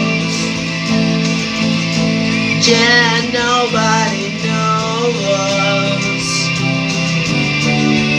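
A man singing over electric guitar chords, holding a long note with a wavering pitch in the middle of the phrase.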